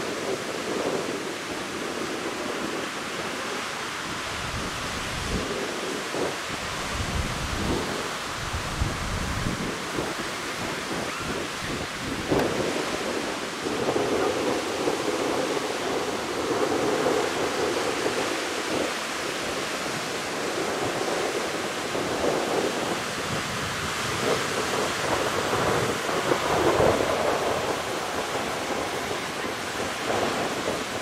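Surf breaking on a sandy beach in waves that swell and fade, with wind buffeting the microphone in low rumbling gusts, heaviest from about five to nine seconds in.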